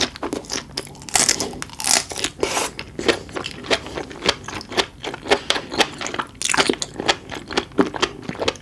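Close-miked mouth chewing a mouthful of sea grapes and raw red shrimp: a dense run of quick wet clicks and small crunchy pops, thickest a second or two in.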